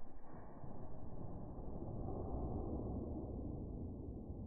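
Faint, steady low rumble of outdoor background noise, with no shot or impact heard.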